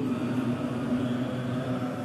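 A steady low drone with a slightly wavering hum, and no speech.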